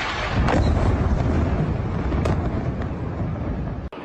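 Airstrike explosion: a loud, deep rumbling boom that swells about a third of a second in and slowly fades, with two sharp cracks along the way. It cuts off abruptly just before the end.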